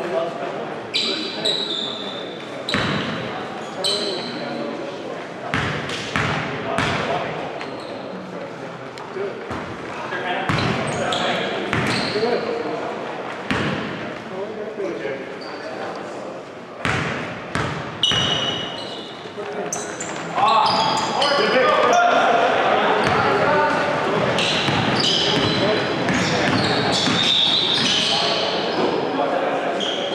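Basketball game sounds in a large gym: a ball bouncing on the hardwood, short high sneaker squeaks and players' voices, echoing in the hall. It is sparse at first and gets busier and louder from about two-thirds of the way in.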